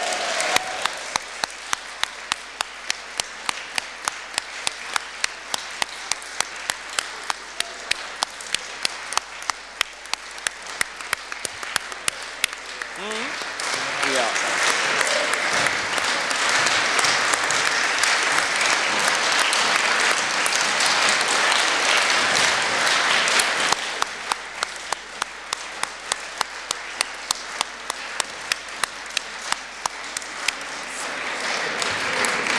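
Audience applauding, with one clapper close by keeping a steady beat of about two claps a second. The applause swells louder about halfway through and settles back near the end.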